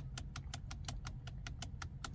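A fast, even run of small plastic clicks: the steering-wheel OK button of a Ford Mustang being pressed over and over to step through the instrument cluster's engineering test mode screens.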